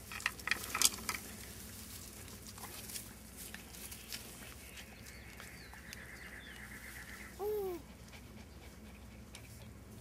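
Dachshund puppies playing in grass: a few sharp rustling and handling knocks in the first second, then one short puppy yelp that rises and falls in pitch about three quarters of the way through.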